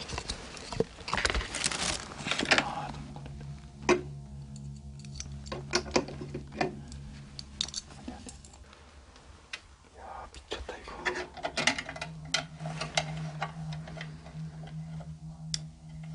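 Small metal clicks and rattles of a brass lock on a lacquered wooden chest being worked with a thin metal pick. A low steady hum runs underneath for long stretches.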